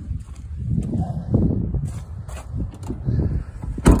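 Irregular low rumble of outdoor handling noise on a phone microphone, with a single sharp knock just before the end.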